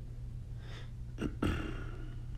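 Steady low hum with a short breathy throat noise from a man about a second and a half in, just after a small click.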